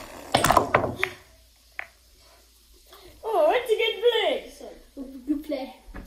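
Pool balls clacking as a shot is played, with a single sharp click of ball on ball about two seconds in. A person's long, wavering vocal exclamation follows midway, then more voice.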